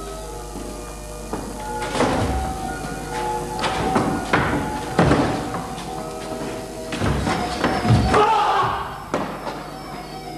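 Sustained background music with several heavy thuds and scuffles from a staged knife fight, as actors stamp, grapple and fall on the stage floor. The loudest impacts come about two, four, five, seven and eight seconds in.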